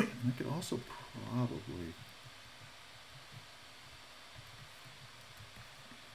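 A voice making brief mumbled sounds in the first two seconds, then quiet room tone with a faint steady hiss.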